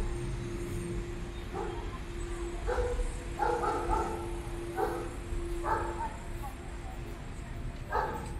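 Five short, high-pitched vocal calls at about one a second, starting about a second and a half in, over a faint steady hum and street rumble.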